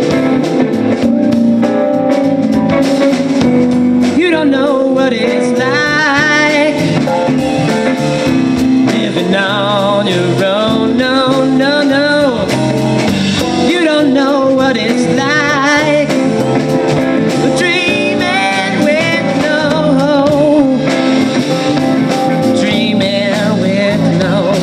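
Live rock band playing an instrumental passage: two electric guitars over a drum kit, with a lead line of sustained, wavering vibrato notes from about four seconds in.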